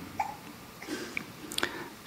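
A short pause in a talk: the quiet room tone of a large hall, with a few faint short noises.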